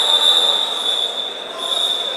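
Referee's whistle blown in a long, steady, shrill blast with a brief break about one and a half seconds in, stopping the wrestling action.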